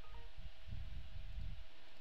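Low background room tone from the recording microphone: a faint low rumble with a steady thin hum, and a few brief faint tones just after the start.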